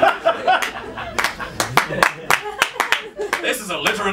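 Audience laughing and clapping in response to a punchline. Laughter at first, then many irregular claps.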